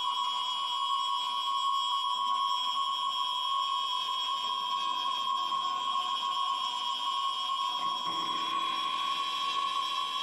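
Drone music from processed guitars: sustained, steady high tones held without a break, with a lower layer entering about eight seconds in.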